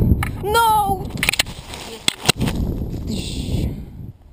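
Wind rumbling over the microphone of a camera carried on a swinging rope jumper. A short wordless voice call comes about half a second in, and a few sharp knocks follow.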